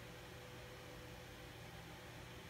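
Near silence: faint room tone, a steady low hum under a soft hiss.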